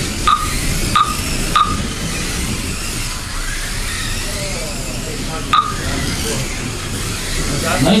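Small electric motors of Mini-Z LM-class RC cars with 70-turn motors whining faintly, rising and falling in pitch as the cars speed up and slow down around the track, over a steady hiss. Four short sharp chirps cut through, three in the first two seconds and one past the middle.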